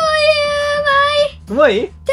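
A child's voice holding one long, sing-song note, drawing out a word, then breaking into a short warbling wobble in pitch near the end.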